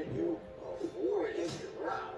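Film-trailer voice audio put through the 'G-Major' pitch-shift and chorus effect, so the words come out as warbling, layered tones that rise and fall in quick short arcs.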